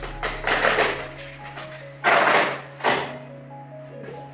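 Polystyrene foam packing tray scraping and rubbing as it is pulled up off a boxed LED TV: three harsh scratchy bursts, the loudest about two seconds in, over background music.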